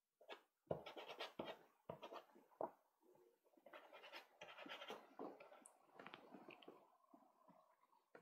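Faint scratching of a soft pastel stick stroked on sanded pastelmat, a series of short strokes, each a fraction of a second.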